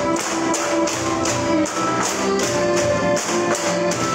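Music for a bamboo dance, with the sharp clack of bamboo poles being struck together and on the floor in a steady rhythm, about two or three strikes a second.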